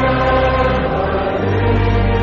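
Church congregation singing a hymn in slow, held chords, with a deep bass note coming in about one and a half seconds in.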